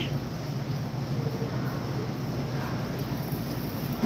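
Steady background noise of a large warehouse store: an even low rumble and hiss with no distinct events.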